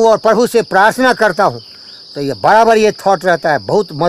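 A steady high-pitched insect chorus, one unbroken trill, under a man's voice talking close to the microphone.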